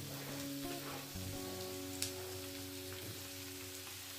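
Chicken breast pieces sizzling steadily in oil and a melting cube of butter in a nonstick frying pan, with a single click about two seconds in.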